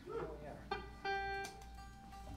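Electric guitar picked on stage: a couple of single notes, the louder one ringing for about half a second near the middle, with a brief voice just before.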